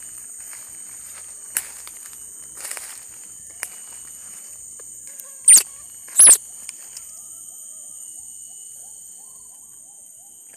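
Baby monkey giving two short, shrill squeals about a second apart, halfway through, over a steady high drone of insects, with a few soft rustles of handling.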